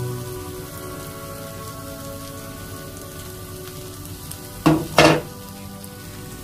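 Onion-tomato masala frying in a nonstick kadai: a steady sizzle. About five seconds in come two loud, sharp knocks in quick succession.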